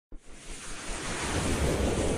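A rushing, wind-like whoosh swelling up out of silence, the sound effect of an animated logo intro.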